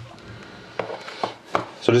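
A few light knocks and taps of a cardboard trading-card box being handled and set down on a tabletop.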